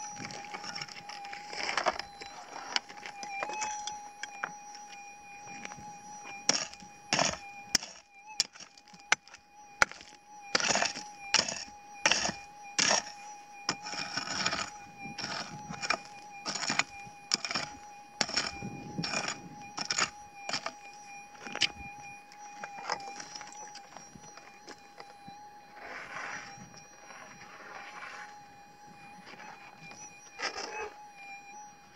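A pick striking stony, gravelly ground again and again, about twenty blows from a few seconds in until past the middle, with a softer scraping of loosened soil near the end. It is digging out a target that a metal detector has picked up. A steady thin tone runs underneath.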